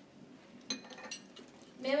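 Two light clinks, about a second apart, each with a brief high ring, against a quiet room; speech starts just before the end.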